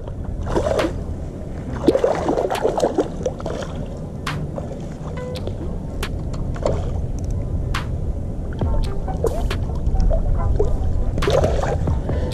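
Water splashing and sloshing as a hooked smallmouth bass thrashes at the surface while being reeled in, with scattered sharp clicks over a steady low noise.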